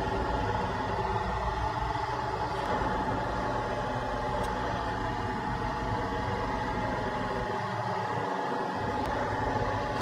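A steady mechanical hum with a thin, steady tone above it, like a fan or air-handling unit running; the soldering itself makes no distinct sound. The deepest part of the hum drops out briefly near the end.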